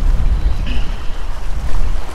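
Wind buffeting the microphone, a loud low rumble, over small waves washing against jetty rocks.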